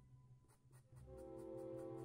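Chalk marker tip scratching on a chalkboard in quick, regular hatching strokes, about five a second, faint. Soft background string music comes back in about halfway through.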